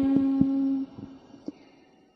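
A chanting voice holds one long steady note at the end of a line of Vietnamese verse, cutting off a little under a second in. A short pause follows, with a few faint clicks.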